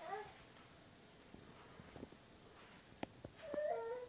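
A small animal calling twice, high-pitched: a short call at the start and a longer call falling in pitch near the end, with a few light knocks in between.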